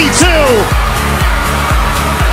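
Background music with a steady bass beat of about two pulses a second and a gliding vocal line.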